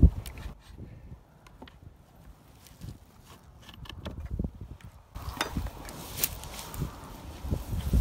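Scattered light clicks, knocks and scrapes of a metal hive tool against the wooden entrance block of a wooden nuc box as the entrance is opened, with rustling of handling and plants growing denser from about five seconds in.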